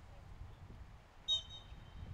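A referee's whistle: one short, high-pitched blast a little past halfway, signalling the set-piece hit, over a low steady rumble.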